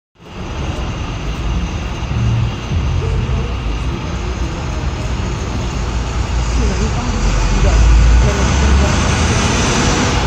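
Street traffic on a wet road: a steady engine rumble and tyre hiss from passing vehicles and an approaching city bus, swelling to its loudest about eight seconds in.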